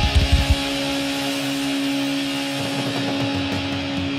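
Live thrash metal: fast, pounding drums stop about half a second in, leaving a distorted electric guitar note held and ringing on.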